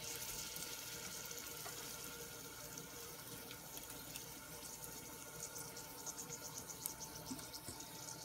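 Hot oil sizzling faintly in a saucepan with mustard seeds and dried red chillies, a soft hiss with small crackles that come more often toward the end as the seeds begin to pop.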